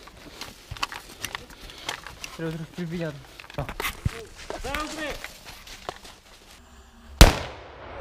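An airsoft mortar firing once: a single sharp bang about seven seconds in, the loudest sound here. Before it come scattered small clicks and knocks of handling gear.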